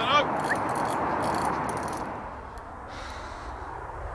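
Carp fishing reel rattling as a hooked carp takes line, with scattered clicks over it, dying away after about two seconds.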